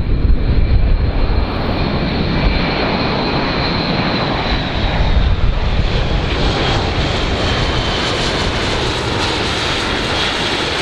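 Airbus A400M Atlas flying low, its four turboprop engines giving a heavy, steady drone. A faint high whine falls slightly in pitch over the first few seconds, and a higher hiss builds from about six seconds on.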